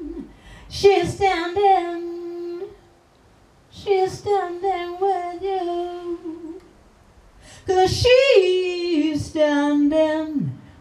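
Woman singing solo into a microphone with no band playing beneath: three phrases with held, slightly wavering notes, separated by short pauses.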